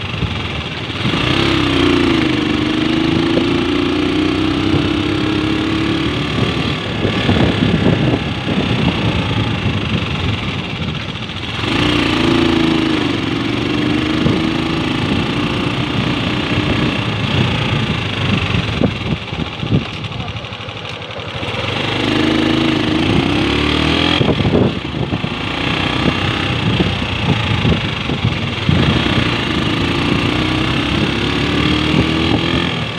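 Motorcycle engine running under way, buried in heavy wind and road noise. Its pitch climbs and then holds as the bike speeds up, four times, with two short easings of the engine in between.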